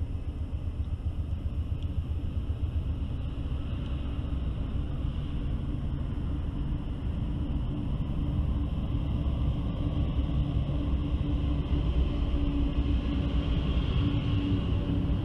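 Three Norfolk Southern GE C44-9W diesel-electric locomotives heading a freight train, their engines rumbling steadily and growing louder as they approach and come alongside.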